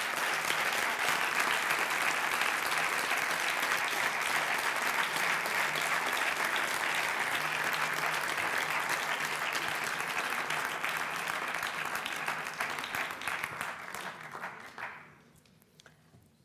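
Audience applauding, a long round of clapping that dies away near the end.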